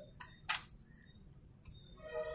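Earphone packaging being handled: a few sharp clicks and taps from the moulded tray, the loudest about half a second in.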